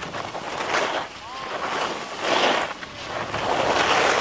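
Skis carving turns down a groomed snow piste: a rushing scrape of edges on snow that swells with each turn, about every one and a half seconds, over wind on the microphone. A brief faint squeal rises and falls a little after one second.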